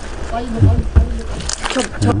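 Short, indistinct snatches of voices, with a couple of low knocks from handling about half a second and a second in.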